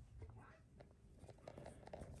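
Near silence with a few faint soft clicks and rustles: a flour-dredged cabbage slice being lifted from a plate and laid into a bowl of beaten egg.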